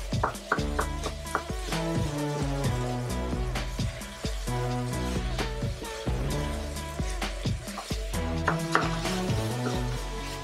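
Background music with a bass line, over a wooden spoon stirring minced meat that is frying in a pan, with scattered scraping clicks.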